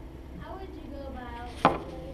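A single sharp knock about one and a half seconds in, over faint murmuring voices.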